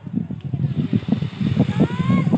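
Low, uneven outdoor rumble at the sea's edge, the mix of lapping shallow water and wind on the microphone, with a brief distant raised voice near the end.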